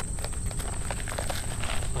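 Nylon sling pack being handled: a scatter of light, irregular clicks and taps from its fabric and fittings, over a steady high-pitched insect trill.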